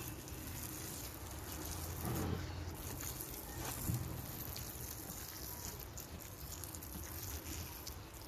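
Hand pump spray bottle spraying water onto the potting soil of freshly planted onions: a steady, even hiss of water.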